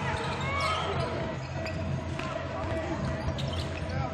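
A basketball being dribbled on a hardwood arena court: faint, scattered bounces over a steady low hum of arena sound.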